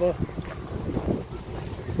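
Wind buffeting an outdoor handheld microphone: a low, uneven rumble, with a few faint knocks.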